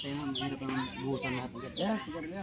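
Background chatter of several people talking at once, children's voices among them, no one speaking close up. Short high falling bird chirps sound now and then over it.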